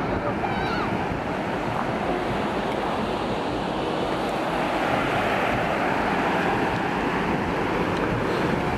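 Baltic Sea surf breaking on a sandy beach, a steady wash of waves mixed with wind on the microphone.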